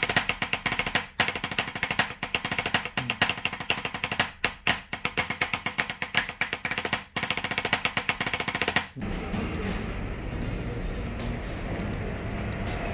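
Wooden drumsticks playing fast warm-up strokes and rolls on a rubber drum practice pad, with a few short breaks. About nine seconds in the strokes stop and a steady rumbling noise takes over.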